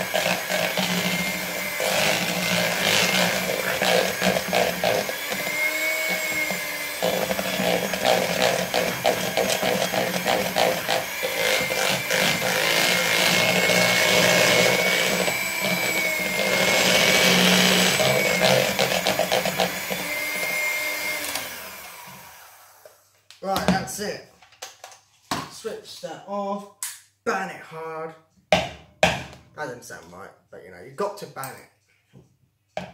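Electric hand mixer running at a steady speed, its beaters churning a thick chocolate icing mix in a bowl, with a motor whine; about 21 seconds in it is switched off and winds down. Then come a string of sharp knocks and clatter.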